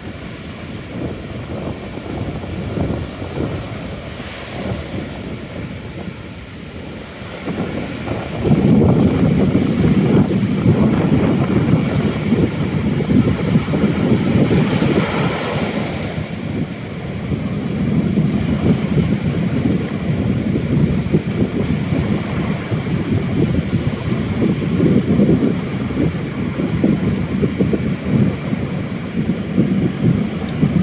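Wind buffeting the microphone over the rush of ocean surf on a beach. The wind rumble turns louder about a quarter of the way in and stays strong.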